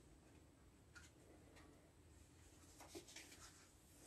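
Near silence: faint room tone with a few faint, short clicks.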